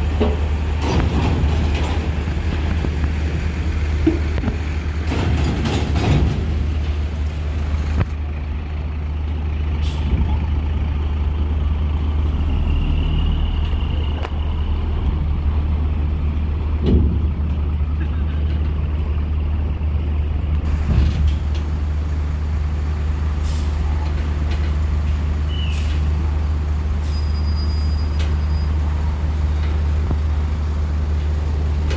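Diesel coach bus running in low gear as it drives slowly up a ferry's steel loading ramp, a steady low engine rumble throughout, with a few short hisses of air brakes along the way.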